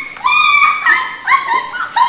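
A dog yelping and whining: about four short, high-pitched cries in quick succession.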